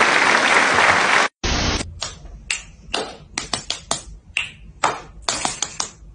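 A dense noisy wash that cuts off abruptly a little over a second in, followed by a brief hiss and then a string of sharp, irregular clicks or taps, a few each second, over a low rumble.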